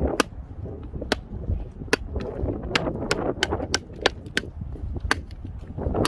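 Hand-forged Nesmuk-style camping nadae chopping a thin branch against a wooden stump: about a dozen sharp, irregular chops, some close together.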